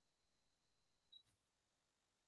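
Near silence: faint line hiss with a thin high whine that stops just over a second in, ending in a brief faint tick.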